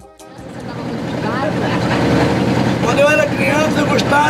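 A wooden boat's inboard engine running steadily, heard from the boat's cabin, fading up over the first two seconds.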